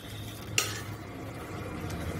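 Metal ladle stirring thick vegetable kurma in a metal pot, with a sharp clink against the pot about half a second in and a fainter one near the end, over a steady low hum.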